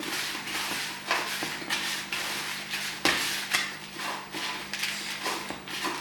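Hands mixing damp seed starter mix (peat moss, perlite and vermiculite) in a plastic bucket: repeated rustling, scraping strokes, about two a second, as the water is worked into the soil.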